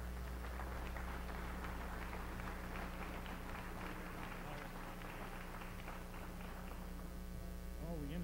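Audience applauding at the end of a talk, with a steady electrical mains hum underneath; the clapping thins out toward the end.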